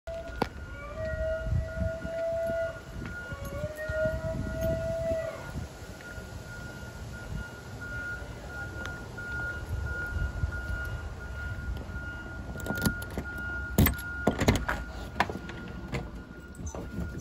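Basenji puppy yodel-howling in distress at being left home alone, a sign of separation anxiety: two long howls that rise and then hold in the first five seconds, followed by a thin steady high whine. Several sharp clicks and knocks come near the end.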